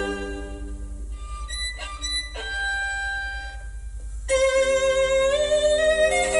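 Violin music played back through Trio LS-707 loudspeakers driven by a tube amplifier and heard in the room. A soft passage with a long held note swells louder a little after four seconds in.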